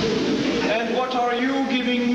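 Only speech: an actor's voice delivering lines on stage, picked up from the audience.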